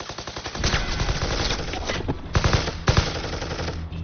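Automatic gunfire from a film soundtrack: a rapid, continuous stream of shots, with a few heavier bangs about two and a half and three seconds in, easing off just before the end.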